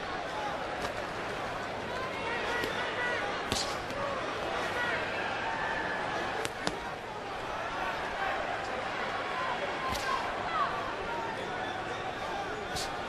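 Boxing arena crowd: a steady din of many voices calling out, with a few sharp smacks of punches landing, clearest about three and a half seconds in and again near ten seconds.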